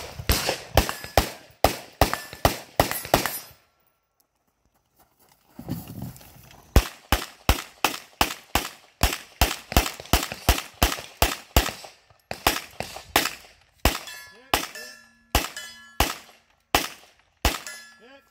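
Rapid handgun fire at a shooting stage: strings of single shots about two to three a second, with a pause of about two seconds early on. Late in the string, a lingering ring follows some shots, as bullets hit steel targets.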